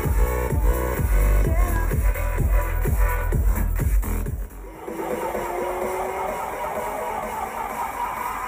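Electronic dance music from a DJ set played loud over outdoor PA speakers, picked up by a handheld camera's built-in microphone, with a heavy kick drum about two beats a second. A little past halfway the beat drops out and a slowly rising synth tone builds in its place.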